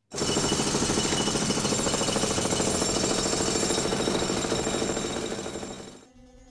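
Pneumatic jackhammer breaking up a concrete floor: a loud, rapid, steady hammering that starts abruptly and fades out near the end.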